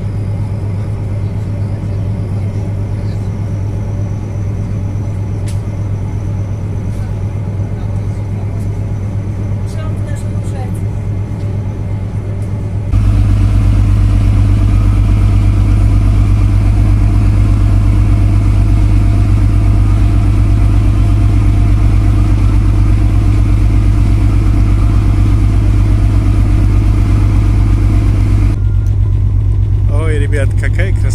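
River cruise ship's engines running with a steady, loud low drone heard from the deck while the ship is under way. About 13 seconds in the drone abruptly becomes louder and deeper.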